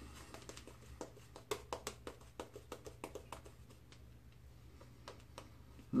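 Shaving brush working menthol shaving-soap lather over a stubbled face, heard as a run of soft, irregular crackling clicks, a few per second.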